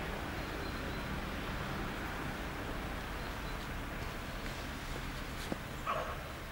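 Steady outdoor background noise with a low rumble and no clear single source, and a couple of faint clicks near the end.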